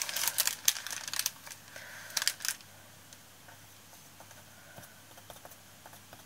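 Thin gold leaf foil and its paper packet crinkling and crackling as they are pulled apart by hand: a quick run of small crackles for about two and a half seconds, then only faint, occasional rustles.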